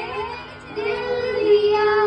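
Two girls singing a Hindi patriotic song into a handheld microphone; after a short dip the voice settles into one long held note from about a second in.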